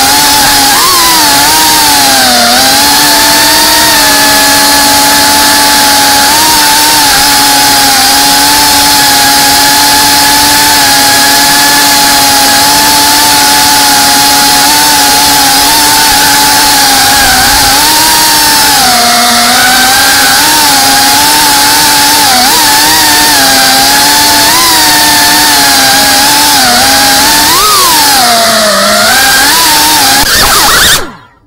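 FPV quadcopter's brushless motors and propellers whining loudly into the onboard camera's microphone. The pitch holds mostly steady, dipping and rising with throttle changes, most sharply just before the end.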